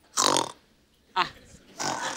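A person imitating snoring with the voice: short rough, breathy grunts, three of them with pauses between.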